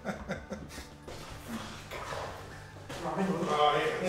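A few light knocks, then a man's voice and laughter that grow louder near the end.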